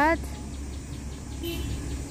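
Steady low rumble of road traffic as double-decker buses move through a roadside bus stop.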